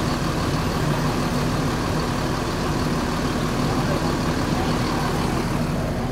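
Intercity bus engine idling steadily, a low even hum.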